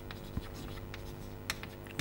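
Chalk tapping and scratching on a chalkboard as words are written, with two short sharp taps, the second about three quarters of the way through, over a steady low hum.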